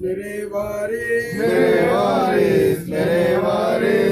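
Men's voices chanting a Sufi devotional zikr, with drawn-out sung phrases and a brief break for breath about three seconds in.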